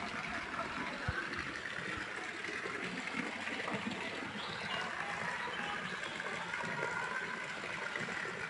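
Steady hiss of running water.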